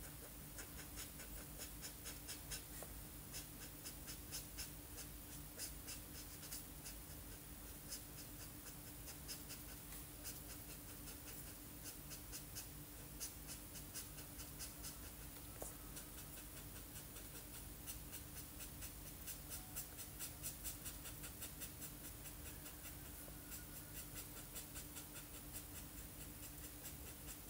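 Felt-tip marker scratching on paper in quick, repeated colouring strokes, over a faint steady hum.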